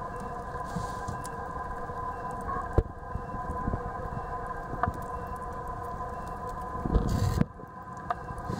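A steady mechanical hum made of several tones, with a sharp click about three seconds in, a smaller click about five seconds in and a muffled rumbling bump near the end.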